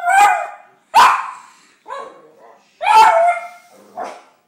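A Boston terrier barking and yowling in a string of pitched, voice-like calls, about one a second, the third fainter and the last one drawn out longest.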